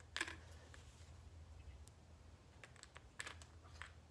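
Faint, light clicks of AAA batteries and the plastic battery compartment of an LED taper candle being handled, a few scattered soft clicks in the second half over low room hum.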